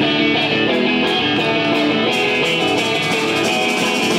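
Electric guitar playing the opening of a punk rock song, heard live through the club PA, with a steady, dense sound and no break.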